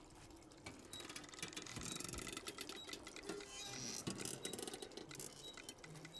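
Quiet, rapid clicking and ticking over faint background music.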